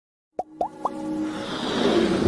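Electronic intro sting: three quick rising plop sounds, then a swelling whoosh that builds up toward a music entry.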